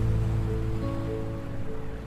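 Slow, gentle acoustic guitar music, notes ringing out and fading, with a new note coming in about a second in, laid over a soft wash of ocean waves.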